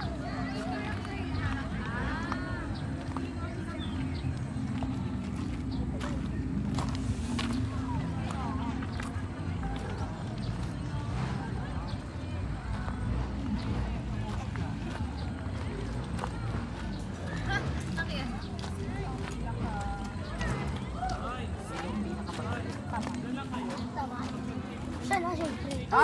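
Indistinct voices of people talking at a distance over a steady low rumble. Scattered crunching steps on a gravel riverbed can be heard as the phone's holder walks.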